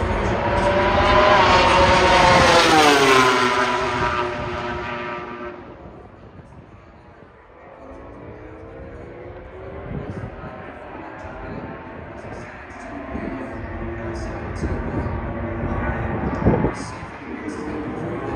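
MotoGP race bikes going by at speed on the straight. The first is loud and its engine note drops in pitch as it passes, then fades; fainter bikes follow later. There is one sharp pop near the end.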